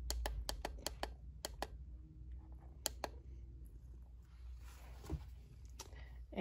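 Plastic push-button on a heating pad's handheld controller clicking about eight times in quick succession as the timer setting is stepped through, with one more click about three seconds in. Faint handling rustle and a soft knock follow near the end.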